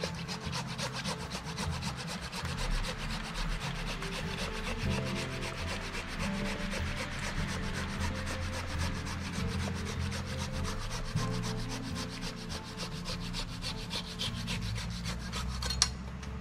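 Hand pruning saw cutting through a cherry tree branch in quick, even rasping strokes, with one sharp crack near the end.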